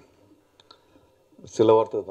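A quiet pause with a couple of faint clicks, then a man's voice over the podium microphone near the end.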